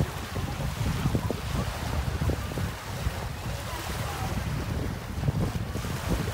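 Wind buffeting the phone's microphone in uneven gusts, over small waves breaking and washing up the beach.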